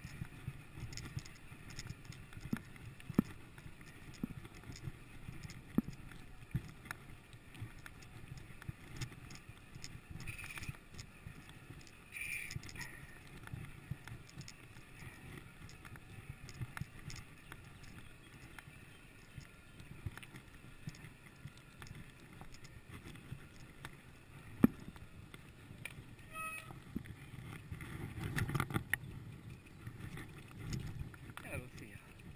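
Mountain bike rolling over a bumpy forest dirt trail: a steady low rumble of tyres on dirt, with scattered knocks and rattles from the bike over bumps, the sharpest a few seconds before the end. A brief ringing tone sounds shortly after, and the rumble grows louder near the end.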